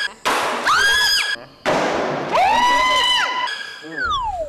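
High-pitched screams of fright, one after another, the last one longer, each starting with a harsh rush of noise.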